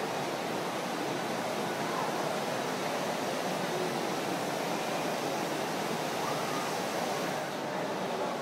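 Steady background ambience of a large indoor shopping mall: an even, continuous hiss with faint distant voices now and then.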